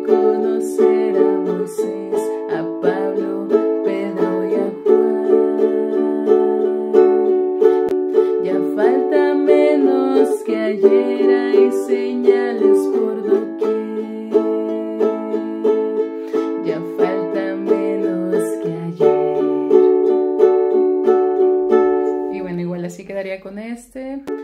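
Ukulele strummed steadily through the chords of a song in D (D, G and A major), with several chord changes. The strumming dies away just before the end.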